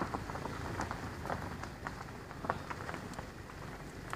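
Vehicle rolling slowly along a bumpy back road: a steady low rumble with scattered light crackles and ticks.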